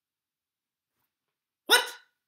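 Dead silence, then near the end a man's single short, loud exclamation of surprise: "What?"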